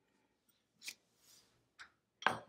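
Near silence broken by two faint, brief clicks, about a second in and near the end: a metal spoon tapping a small bowl of thick paint as it is lifted out and set down.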